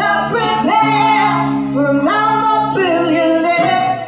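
Live female vocal singing long, sliding held notes over sustained low instrument notes, with the drums dropped out.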